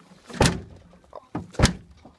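Heavy thumps on a car's trunk lid: a strong one about half a second in, a lighter one, then another strong one near the end.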